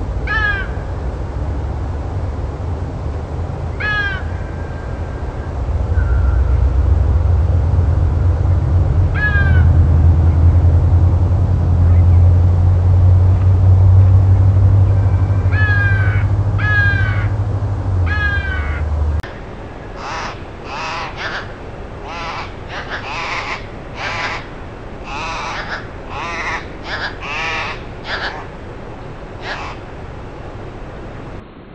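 Single short bird calls every few seconds over a low wind rumble on the microphone, a few of them in quick succession around the middle. After an abrupt change in the sound, the rumble is gone and a quicker run of harsh bird calls follows, about one to two a second.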